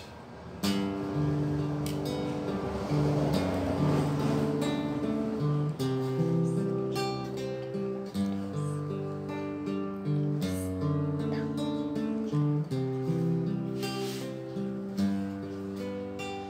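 Solo classical acoustic guitar played by hand, plucked single notes and chords ringing over a moving bass line, as the instrumental introduction to a song.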